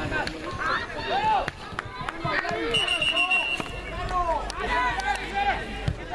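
Voices of children and adults shouting and calling around a youth football pitch, with a few sharp knocks. A brief steady whistle sounds about three seconds in.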